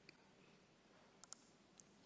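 Near silence: room tone with a few faint, short clicks, one at the start, a close pair just past the middle and one near the end.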